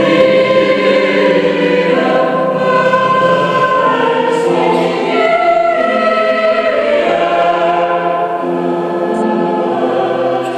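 Mixed church choir of men's and women's voices singing a sacred piece in a church, with sustained chords that change every second or two.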